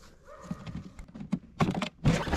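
A series of irregular light knocks and clicks, louder and closer together near the end, as the Traxxas Spartan RC boat's plastic hull is picked up from the water's edge and handled.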